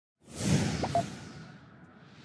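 Whoosh sound effect of an animated intro: one swell that rises quickly a fraction of a second in and then fades away.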